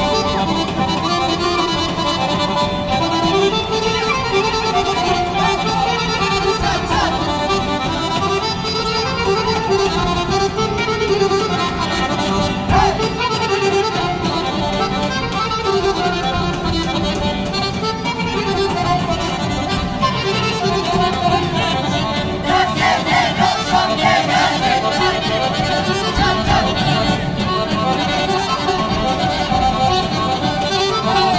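Live Bulgarian folk music: an accordion plays the melody over the beat of a large double-headed tapan drum.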